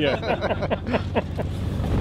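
Steady low drone of a fishing cutter's engine, with laughter trailing off in the first second or so.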